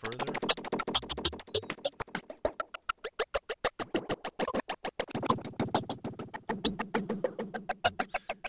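Glitched percussion loop from Reason's Dr. OctoRex loop player: a sliced bongo loop stuttering in rapid repeats, run through effects, with its pitch shifting as the LFO amount is turned up.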